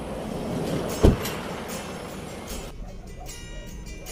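A car door shutting with a single heavy thump about a second in. Background music starts a little under three seconds in.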